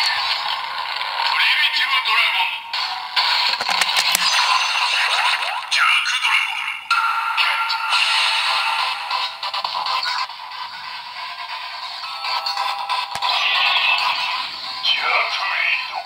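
Electronic toy sound effects, music and a synthesized announcer voice playing from the small speaker of a DX Kamen Rider Saber holy sword and Wonder Ride Book set, with almost no bass. A few plastic clicks come from the book being handled, near the start and again about four seconds in.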